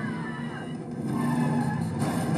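A car engine running steadily in a cartoon's soundtrack, played back through speakers.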